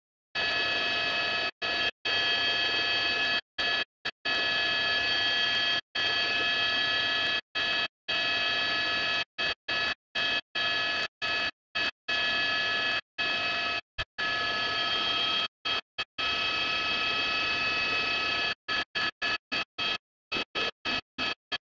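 Steady mechanical whine made of several fixed pitches, typical of a helicopter's cabin and engine noise picked up by the crew intercom. It cuts in and out abruptly many times, as a gated microphone opens and closes.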